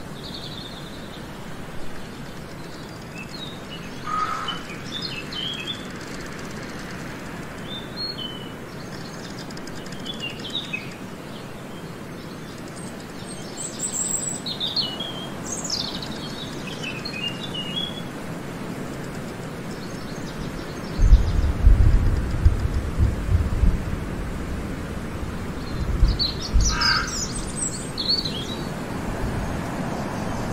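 Small birds chirping and twittering here and there over a steady forest background hiss. About two-thirds of the way through comes a few seconds of deep, gusty low rumbling, which returns briefly near the end.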